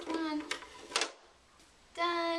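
A young child's brief high-pitched vocal sound, then two sharp wooden knocks about half a second apart as a wooden slatted crate is set down into a wooden toy wagon.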